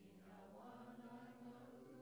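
A group of men and women singing a Māori waiata together, faint, a new sung line starting right at the opening after a short breath pause, the voices held on long notes.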